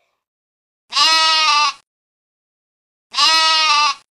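A goat bleating twice, two calls of just under a second each about two seconds apart, with dead silence around them.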